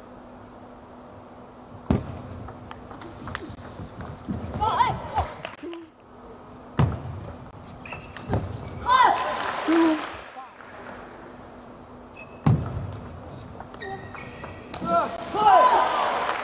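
Table tennis rallies: the ball clicking off rackets and the table in quick runs of hits, with a few louder thumps. Players shout between rallies, one shouting "Go!" and laughing near the end.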